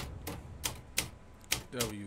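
Keys being typed, about five sharp, irregular clacks, with a low voice starting near the end.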